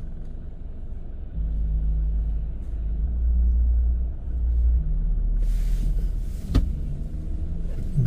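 Low rumble of a car idling while stopped at a red light, heard from inside the cabin; it gets louder about a second and a half in. A brief hiss comes a little past halfway, then a single click.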